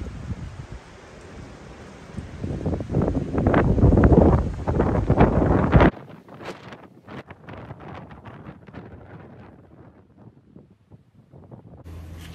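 Gusty wind buffeting the microphone, heaviest a few seconds in. About six seconds in it cuts off abruptly to quieter, patchy wind noise that dies down near the end.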